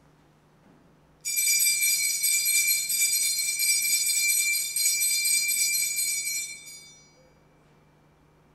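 Altar bells (a cluster of small bells) shaken and ringing steadily for about five seconds, starting suddenly about a second in and dying away near the end. It is the bell rung at the elevation of the consecrated host during the consecration at Mass.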